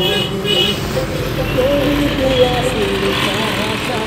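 Vehicle engine and road noise heard from inside a car, with a short horn toot about half a second in.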